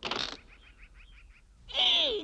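Cartoon sound effects: a short buzz-like burst at the start as the doorbell is pressed, then the drawn-out creak of a wooden door swinging open near the end, sliding downward in pitch.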